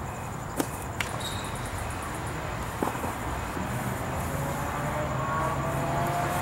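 Steady background traffic noise, with a vehicle engine coming up through the second half and rising slowly in pitch. Three short sharp clicks in the first half.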